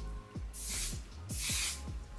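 Two short hisses from an aerosol can of ONE/SIZE On 'Til Dawn makeup setting spray, each about half a second long, over background music with a beat.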